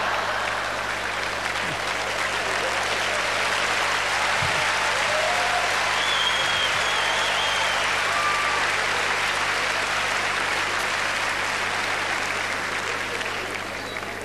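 Audience applauding in a hall, a long steady round of clapping that fades out near the end.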